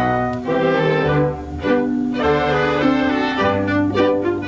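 Theatre pit orchestra playing an instrumental passage of sustained, changing chords, with violins to the fore.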